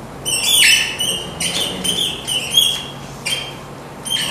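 A marker squeaking across a whiteboard as a word is written: a quick run of short, high squeaky strokes.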